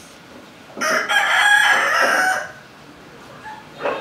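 A rooster crowing once: one long, high call lasting about a second and a half.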